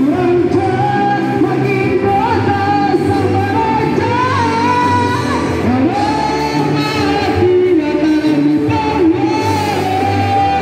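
Live band playing a song with a lead singer: the vocal melody rises and falls over electric guitars, bass and drums, with the echo of a large hall.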